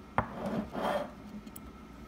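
A single sharp click, then about half a second of rubbing as a hand slides over a felt-covered paper sheet on a table.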